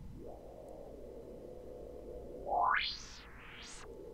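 Synthesized feedback-loop noise from a software effects rack: a faint steady tone, then about two and a half seconds in a filtered noise sweep rises high in pitch, dips and rises again before falling away.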